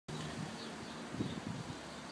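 Faint outdoor background noise, with a few faint low sounds about a second in.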